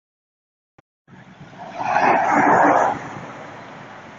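A van driving past close by: engine and tyre noise swell to a loud peak about two seconds in, then drop away sharply, leaving a steady lower rumble as it moves off.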